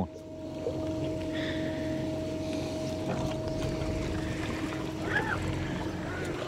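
Bow-mounted electric trolling motor running with a steady hum, as it moves the bass boat back toward the grass line. The hum's higher note drops out about four and a half seconds in.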